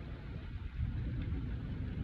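Low, uneven rumble with no clear steady tone: the background noise of a boat on open water.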